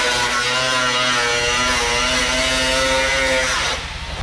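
Handheld power cut-off tool running at high speed while cutting into a Ford Mustang's front fender: a loud, steady whine whose pitch wavers slightly under load, stopping just before the end.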